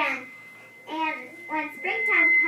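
Children singing in short broken phrases, with a quieter gap in between. A thin, steady high-pitched tone from the sound system runs underneath, the squeak that was noted at the show's start.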